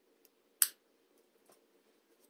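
Scissors cutting a thin crochet thread: one sharp snip a little over half a second in, followed by a much fainter click about a second later.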